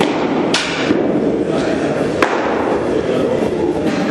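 A pitched baseball smacking into a catcher's mitt about half a second in, then another sharp pop of a ball into a glove a little after two seconds, over steady indoor facility noise.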